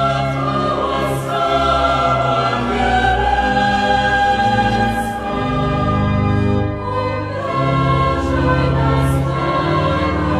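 Choral music: a choir singing slow, sustained chords.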